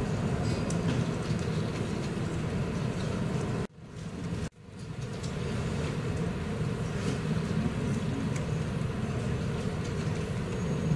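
Steady low rumbling background noise with scattered faint clicks. It drops out abruptly a little under four seconds in and comes back about a second later.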